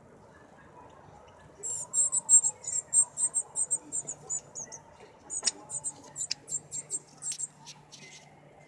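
Northern cardinal fledgling giving rapid, high-pitched begging chirps, about four or five a second, starting about two seconds in with a short break near the middle. A few sharper, down-sweeping notes are mixed in.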